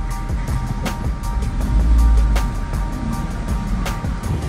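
Background music over the low rumble of a car driving slowly, the rumble swelling about two seconds in.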